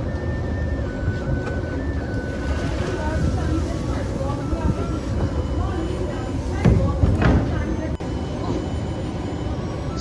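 A giant wok of pork and cabbage stew cooking over the fire with a steady low rumble, under quiet background music. About seven seconds in, a crate of chopped cabbage is tipped into the pot with a louder rush.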